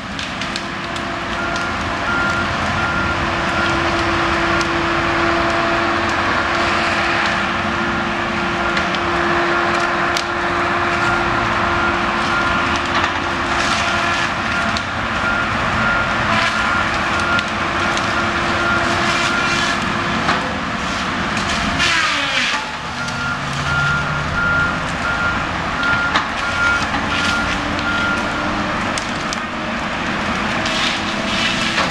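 Diesel engine of a logging machine running hard, with a backup alarm beeping over it. About two-thirds through, after a run of sharp cracks, the engine drops sharply in pitch and then runs on at lower revs.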